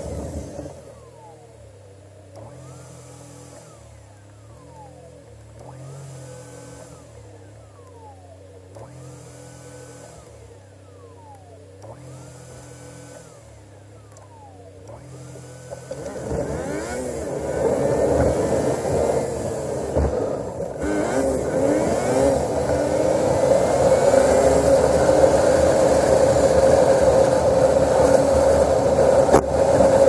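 Car on the move: engine and road noise, quiet at first with a faint pattern repeating about every two seconds, then much louder from about halfway, the engine pitch rising and falling.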